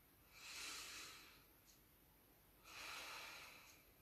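A woman breathing slowly and deeply in a breathwork exercise: two faint, airy breaths about two seconds apart, each swelling and fading over about a second.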